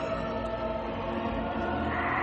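Orchestral film score with a choir singing long held notes.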